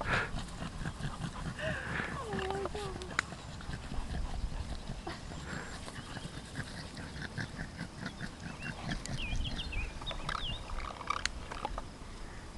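Voices without clear words, such as shouts or laughter, over a steady low rumble, with a few short high chirps about nine to ten seconds in.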